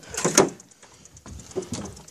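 Handling noise on a hand-held phone: a few short clicks and knocks in the first half second, then faint rubbing and rustling.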